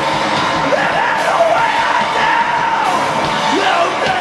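Live rock band playing loud and steady: electric guitars with a singer's vocals on top.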